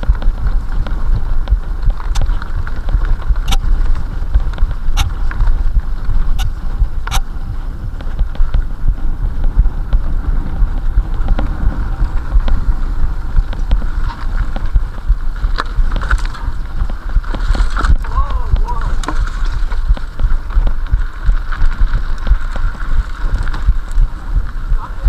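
Mountain bike ridden fast over a forest dirt trail: a steady rumble of wind and trail vibration on the microphone, with a few sharp clicks in the first seven seconds or so.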